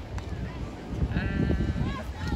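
A drawn-out, high-pitched call from a distant person about a second in, lasting under a second, over steady low wind rumble on the microphone and faint far-off voices.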